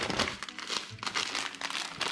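Packing material and a plastic sweets packet crinkling as hands rummage through a box and lift the packet out: a dense, continuous run of small crackles.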